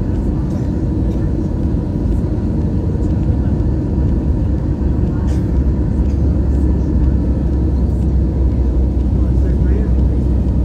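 Airliner cabin noise on the approach to landing: a steady, dense low rumble of engines and airflow, with a deeper drone building from about four seconds in.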